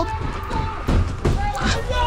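Hurried running footsteps on dirt and grass, with the dull knocks and jostling of a camera being carried on the run, and faint shouting near the end.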